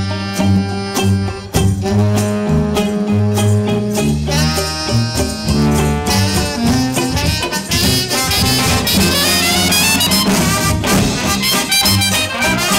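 Live trad jazz band playing: soprano saxophone and trombone over a sousaphone bass line, with banjo and percussion keeping a steady beat. Fast runs of notes fill the upper range from about halfway through.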